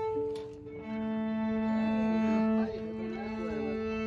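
Two violins and a cello tuning: long, steady bowed notes on open strings overlap, with one note held throughout while others join and drop out.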